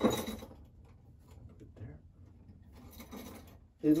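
A short sharp knock, fading over about half a second, as a small piece of granite is set down on the treadle hammer's anvil post. Faint handling sounds follow.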